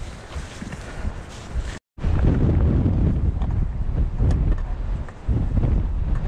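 Wind rushing over a GoPro action camera's microphone while a hardtail mountain bike rolls down a dirt trail, with a few short knocks over bumps. The sound cuts out completely for a moment about two seconds in, then comes back louder.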